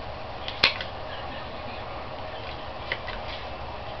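Playing cards handled and thumbed through, giving a few soft clicks, the sharpest just over half a second in, over a steady background hiss.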